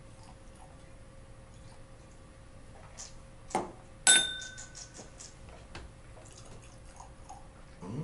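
Glassware clinks once, sharply, about four seconds in, leaving a brief ringing tone. Around it come faint ticks and splashes of whisky being poured from a bottle into a nosing glass.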